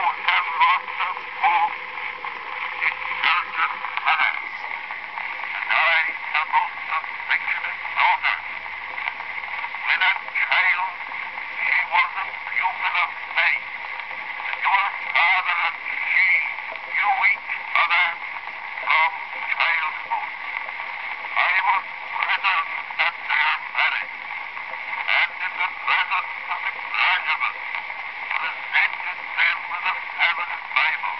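A man's voice speaking from an 1894 brown wax cylinder played back on a phonograph. It sounds thin, with no low end, under a steady surface hiss and a faint constant hum.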